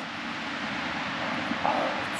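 A steady, even rushing noise in the open air, with no distinct events.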